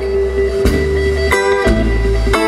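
A live blues band playing without vocals: acoustic guitar, electric bass, electric guitar and drums, with held notes over a steady bass. Chords are struck about a third of the way in and again about two thirds in.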